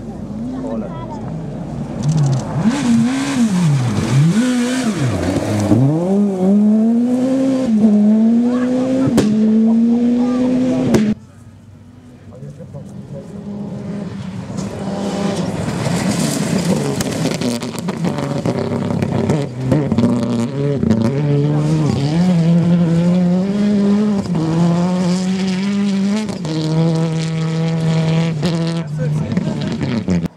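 Rally cars driven flat out on a gravel stage, two passes one after the other with a sudden cut about eleven seconds in. In each pass the engine note climbs and then drops sharply again and again as the driver shifts gears and lifts off. The second car is a Škoda Octavia rally car, which holds a steadier high-revving note near the end.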